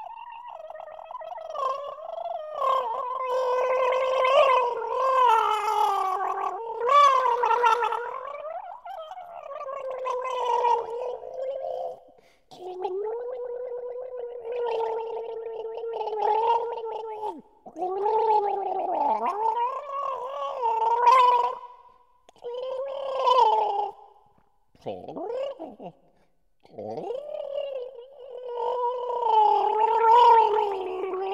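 Pitched gargling as contemporary music: a voice holds notes through water in the throat, so each tone bubbles and flutters. The notes come in phrases of a few seconds with short breaks between them, and near the end two gargles swoop down sharply in pitch.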